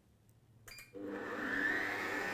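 Kenwood Titanium Chef Patissier XL stand mixer starting up about a second in at a slow speed setting, its motor whine rising briefly as it spins up and then running steadily as it begins to mix flour, sugar, salt and yeast.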